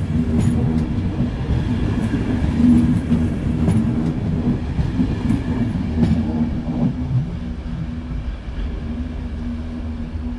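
Express passenger train's coaches rolling past at low speed: a steady low rumble and hum with scattered wheel clicks. The sound fades after the last coach goes by, about six or seven seconds in, as the train draws away.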